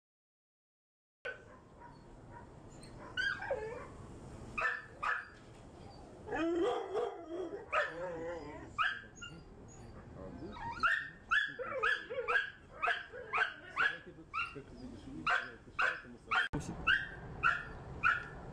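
Pit bull terriers barking in kennel pens, starting about a second in. The barks are scattered at first, then come fast and repeated, about two a second, in the second half.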